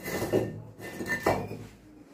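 Fired clay bricks being shifted by hand, clinking and scraping against one another in two short bouts about a second apart, with a brief ringing note.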